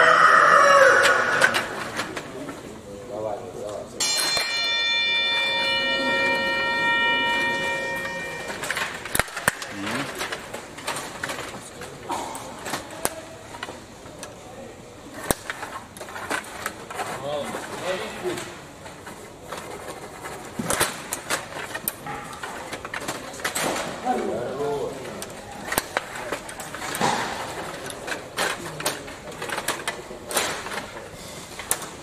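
A buzzer sounds one steady tone for about four and a half seconds, signalling the start of play on the game clock. It is followed by a run of quick, irregular clicks and knocks as the table hockey players work the rods and the puck strikes the players and the rink boards during play.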